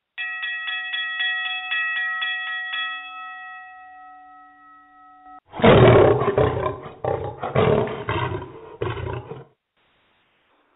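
Sound drops on a talk-radio broadcast. First comes a quick run of bell-like chime strikes, about four a second for nearly three seconds, leaving a ringing tone that fades and cuts off suddenly. Then a louder roar swells in several surges and stops shortly before the end.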